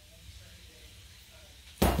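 Faint room tone, then near the end one short, sharp clink of a metal fork against a glass mixing bowl.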